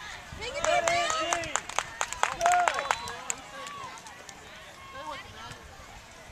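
Shouts and calls of youth soccer players and spectators carrying across the field, loudest in the first three seconds, with a cluster of sharp clicks in among them.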